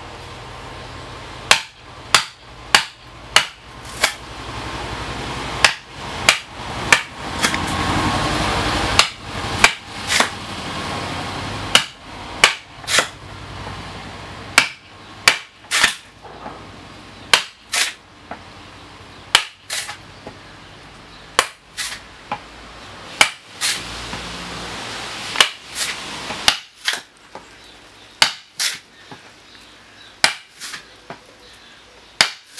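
A wooden mallet striking the back of a froe, driving it into a spruce block to split off roof shakes by hand. Repeated sharp knocks at an irregular pace, often two or three in quick succession.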